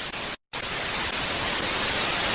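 TV static sound effect: a steady hiss of white noise, broken by a brief silent gap about half a second in.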